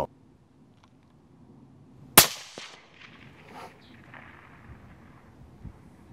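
A single rifle shot about two seconds in, sudden and loud, its report dying away over about a second.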